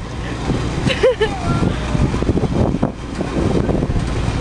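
Outdoor background noise: a steady low rumble under scattered voices, with one short vocal cry about a second in.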